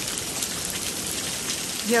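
Heavy rain pouring down, a steady dense hiss of drops hitting a wooden deck.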